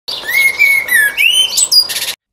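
Common blackbird singing: clear whistled phrases that glide up and down, with thinner, higher twittering notes over them.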